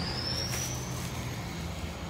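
Street traffic: a motor vehicle's engine running steadily nearby as a low hum, with a faint high whine that slides down in pitch and then back up.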